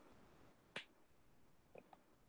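Near silence: room tone with one faint sharp click a little under a second in and a couple of fainter ticks near the end.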